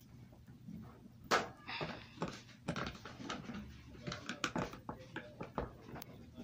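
Irregular clicks, taps and rustles of hands working a plastic toy wrestling ring, fitting the elastic ropes onto a corner turnbuckle post. The sharpest knock comes about a second in.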